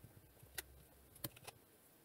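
Near silence with a few faint, sharp clicks of wooden clothespins being handled and clipped into hair.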